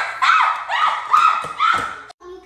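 A woman's repeated high-pitched yelps, about two a second, each rising and then falling in pitch, as she struggles to keep her balance on roller skates.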